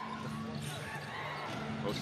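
Steady crowd noise in an indoor basketball arena during live play.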